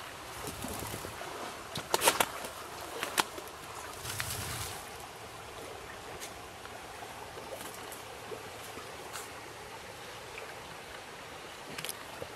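Goats browsing in brush: a few short sharp snaps and rustles of stems and leaves, about two and three seconds in, over a steady, fairly quiet outdoor hiss.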